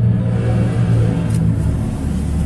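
Steady low rumble with a few held low tones and no speech.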